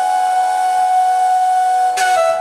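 Indian flute music: the flute holds one long, steady note.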